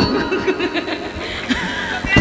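A person chuckling and laughing into a stage microphone, in short repeated bursts heard over the PA.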